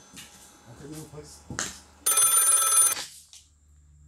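A telephone bell rings in one loud burst just under a second long, about two seconds in.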